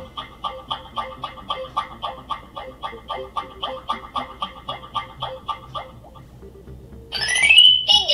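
Meccano M.A.X. robot's speaker playing a looping electronic waiting sound, short quacky beeps about four a second, while it waits for an item to be placed in its claw. The loop stops about six seconds in, and near the end comes a louder electronic sound rising in pitch.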